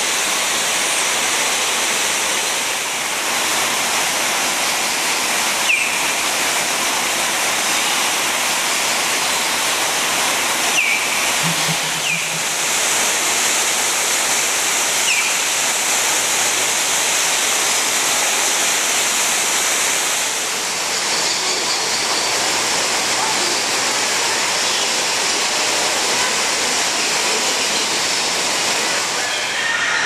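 Steady rushing of falling water, with a few short, high bird chirps scattered through.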